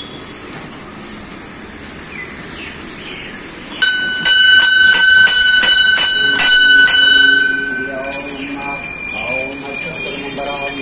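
A hanging brass temple bell struck repeatedly by its clapper, about three strokes a second, ringing with a clear tone, starting about four seconds in. Near the end a higher-pitched small bell is rung rapidly, with a voice over it.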